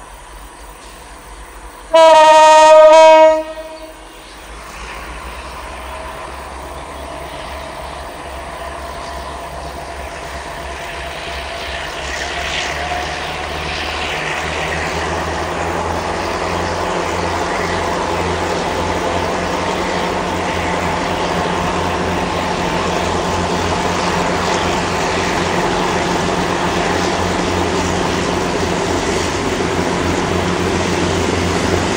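Three CC 202 diesel-electric locomotives heading a Babaranjang coal train: one loud horn blast about two seconds in, lasting about a second and a half. Then the engines' drone and the wheels on the rails grow steadily louder as the train approaches.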